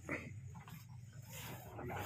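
Row of large metal prayer wheels being turned by hand one after another, creaking on their spindles as they spin.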